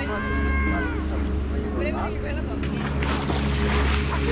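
Busy pebble-beach ambience: bathers' voices with a drawn-out call in the first second, over a steady low engine hum. Crunching footsteps on the pebbles, about two a second, come in past the middle.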